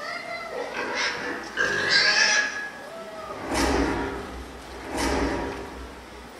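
A child actor imitating a pig, grunting and oinking in several separate outbursts.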